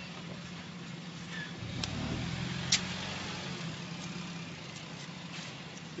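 A motor vehicle engine running with a steady low hum that swells for a second or two about two seconds in, and two short sharp clicks.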